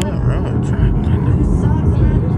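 Steady low rumble of road and wind noise heard inside a moving Chrysler sedan.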